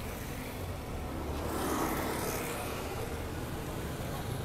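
Road traffic noise on a congested avenue: a low steady rumble of vehicles that swells briefly about two seconds in.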